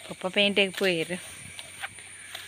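A woman's voice speaking briefly for about a second, over a steady high-pitched hiss.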